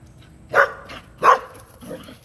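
A dog barking excitedly: two sharp, loud barks about two-thirds of a second apart, then a softer, lower sound near the end.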